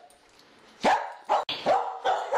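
A dog barking and yelping in short, sharp bursts. There is a near-quiet moment first, then barks from about a second in, with several in quick succession near the end.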